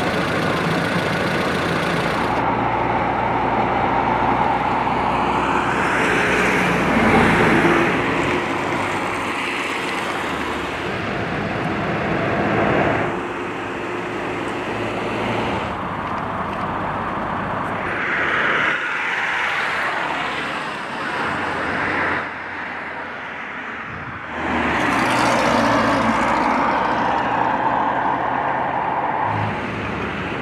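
Road traffic on a highway: cars and trucks driving past, the rushing tyre and engine noise swelling and fading as each vehicle goes by, several times over.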